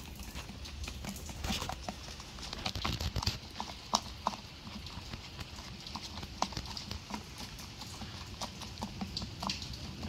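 Irregular light clicks, taps and rustles of close-up handling, with a few sharper knocks about three to four seconds in.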